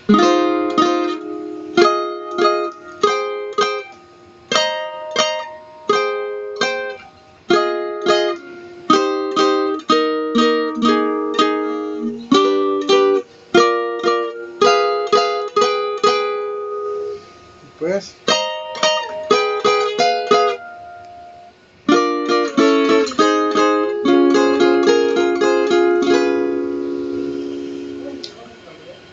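Requinto, a small high-tuned nylon-string trio guitar, playing a fast interlude in quick plucked runs and chords. There are two short breaks after the middle, and it closes on a held chord that fades.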